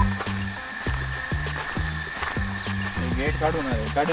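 Background music with a steady low beat, about two beats a second. A voice comes in near the end.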